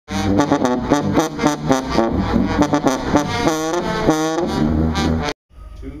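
Three sousaphones playing a brass fanfare together in quick, short, punchy notes with a couple of longer held notes. The playing cuts off abruptly about five seconds in, and a voice counts "two, three" at the very end.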